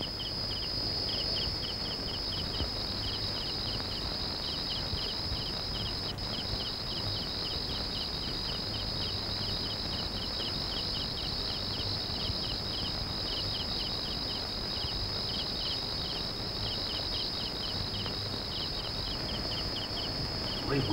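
Night insects, crickets, chirping: a steady high trill with regular chirps a few times a second, a film's night ambience.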